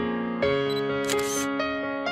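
Instrumental background music with piano notes, with a camera shutter sound effect a little over a second in.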